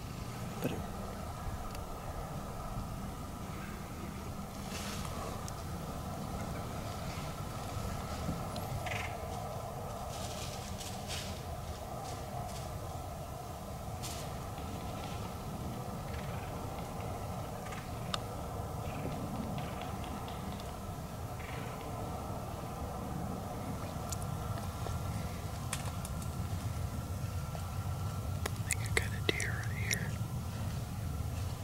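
Quiet outdoor background: a steady low rumble under a faint constant hum, with scattered small clicks and a few faint chirps. Near the end there is a brief cluster of sounds that may be whispering.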